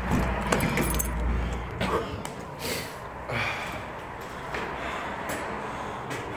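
Low rumble of street traffic and wind on the phone's microphone for the first two seconds or so, with a few light clicks. Then a quieter stretch of handling noise with two short whooshes.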